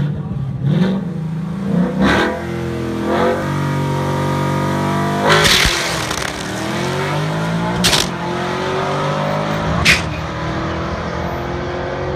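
Ford Coyote 5.0 V8 in a 2014 Mustang GT with bolt-on modifications, on a drag-strip run. It revs and is held steady at the line, then launches hard about five and a half seconds in. It then powershifts the six-speed manual twice, about two seconds apart, with a sharp crack at each shift before the revs climb again.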